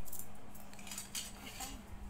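A small wooden toy rolling pin rolling over play clay and knocking against a hard tiled floor, making scattered light clicks and taps.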